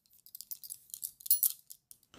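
Faint, irregular scratching and crackling with small clicks, brightest about one and a half seconds in.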